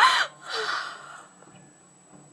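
A person's sharp gasp, short and sudden, followed about half a second later by a softer breathy sigh.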